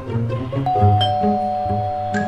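Doorbell chiming a two-note ding-dong, higher note then lower, the notes held and ringing on, over background music with a steady repeating bass line.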